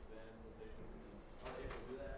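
Faint, distant voice of an audience member asking a question away from the microphone, heard thinly in a room.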